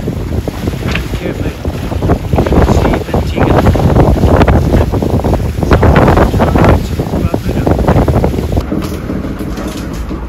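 Wind buffeting the microphone over the rush of waves along a sailing yacht's hull in a choppy sea. The gusts are loudest in the middle and ease off near the end.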